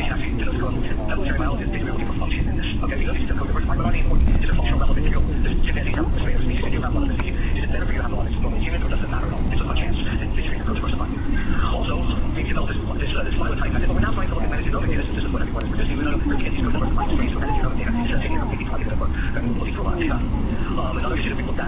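Indistinct voices talking over a steady low rumble, as heard inside a moving vehicle.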